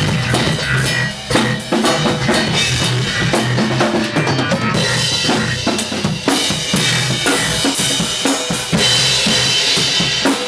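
Acoustic drum kit played in a busy groove, with kick drum, snare and cymbals struck in quick succession throughout.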